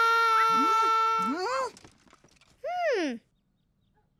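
A long sung 'la' note held steady, ending about a second and a half in, followed by two short rising-and-falling squawks from a cartoon parrot.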